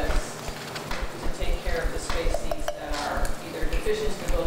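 Faint, muffled talk with scattered sharp clicks and clinks, strongest between about two and three seconds in, over frequent low knocks.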